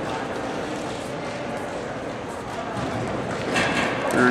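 Steady background noise of a gymnasium during a wrestling match, with faint distant voices.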